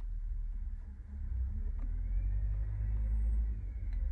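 A low rumble that swells after about a second, with a faint click shortly before two seconds in.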